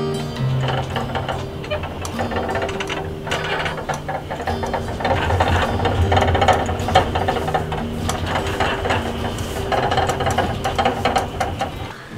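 Background acoustic guitar music over a fast, steady rattling as wind shakes the RV. The rattle is the slide topper over the slide-out, which rattles in the wind and makes a creaking, groaning noise.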